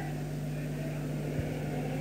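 Steady low electrical hum with a faint hiss, the background noise of the lecture recording, heard in a pause between spoken phrases.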